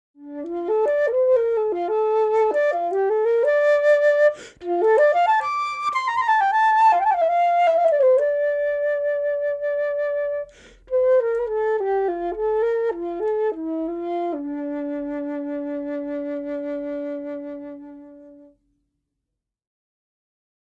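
Solo flute playing a melody, broken by two short breath pauses, ending on a long held low note that fades away.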